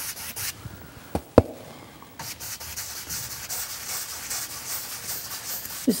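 Wide bristle paintbrush scrubbing blue oil paint onto a canvas wet with liquid white, a scratchy rubbing in quick short strokes that grows louder about two seconds in. Two sharp knocks a little over a second in; the second is the loudest sound.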